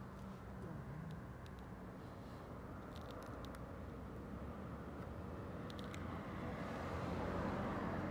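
Steady low rumble of road traffic, growing a little louder near the end, with a few faint clicks.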